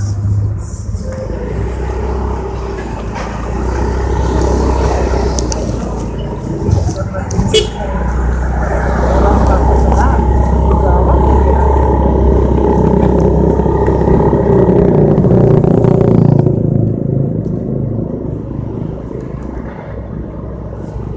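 Motorcycle engine running under way as the bike rides along the road, a steady low engine note with wind and road hiss. The note gets louder around the middle, and near the end the hiss drops away and the level eases.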